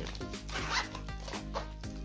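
Zipper on a pink glitter fabric pencil case being pulled, a rasping zip, over quiet background music.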